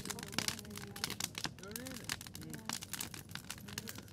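Fire burning in a kiln, crackling with many quick sharp pops, with people talking in the background.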